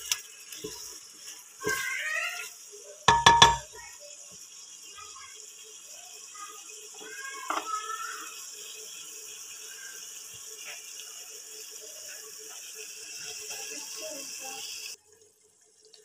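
Mutton and tomatoes sizzling steadily in an aluminium pot, with one loud ringing clank of metal on the pot about three seconds in. The sizzle cuts off abruptly near the end.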